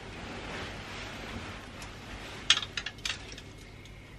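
A wedding gown's tulle and lace rustle softly as the dress is turned on its hanger. About two and a half seconds in come several quick light clicks and clinks as the hanger hook catches on the clothes rail.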